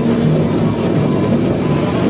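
Winery destemmer and must pump running steadily as destemmed grape berries pass through, a continuous low machine hum that wavers slightly in pitch.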